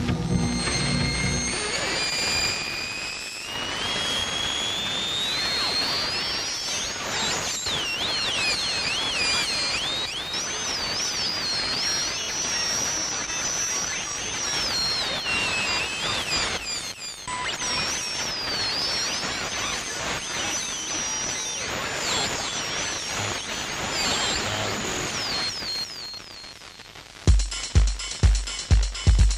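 FM radio hiss with whistling tones that glide and wobble up and down, as the receiver is tuned between pirate stations. A heavy techno drum beat comes in near the end.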